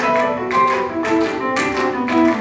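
Live choral piece in a Latin dance rhythm: piano accompaniment with sharp percussive accents about every half second under sustained musical notes.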